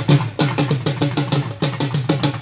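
Drumming in a fast, steady rhythm of many strokes a second, the low, heavy beats of a drum.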